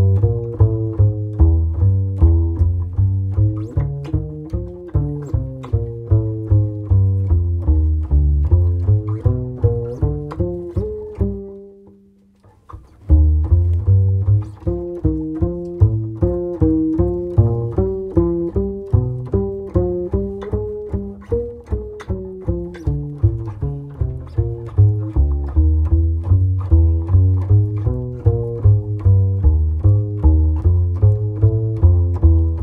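Upright double bass played pizzicato: a solo walking bass line of steady plucked notes. The line stops briefly about twelve seconds in, a held note dying away, then picks up again.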